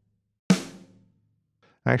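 A single sampled snare drum hit from Logic Pro X's Drum Kit Designer, the "SoCal" snare, played as a preview note when the kit piece is selected. It is one sharp crack about half a second in that rings down over roughly half a second.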